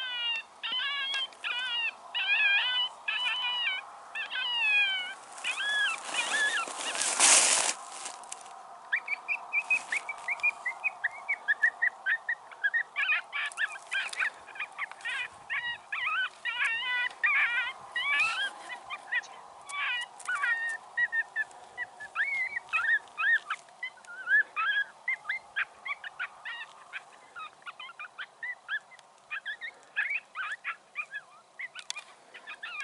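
A chorus of animal calls. Regular pitch-bending calls come about twice a second at first. A loud rush of noise follows a few seconds in, and then many short, high calls overlap densely.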